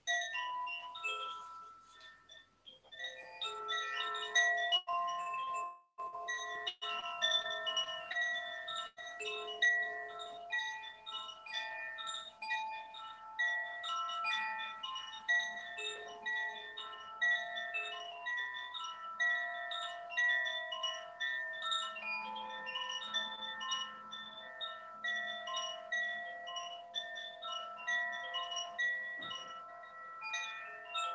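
A hand-held cylindrical wind chime swung gently by its cord, tinkling a shifting, random run of a few bright tuned notes. After a short pause near the start the tinkling carries on steadily and softly.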